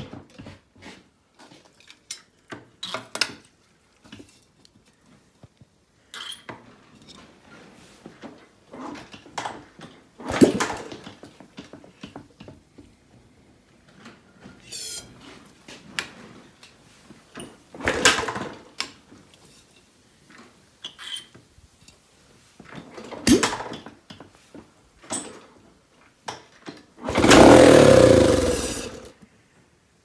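1974 Honda Trail 90's single-cylinder four-stroke engine being kick-started without catching: four separate kicks several seconds apart, each a short clunk. Near the end comes a louder rush of noise lasting about two seconds.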